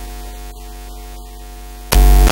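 Steady electrical hum and hiss from a stage sound system, with a sudden very loud distorted burst just before the end.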